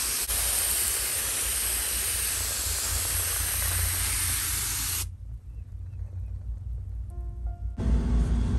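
A steady, even hiss that starts suddenly and cuts off abruptly about five seconds in, leaving a low rumble.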